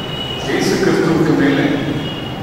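Speech only: a man preaching in Tamil into a microphone at a pulpit.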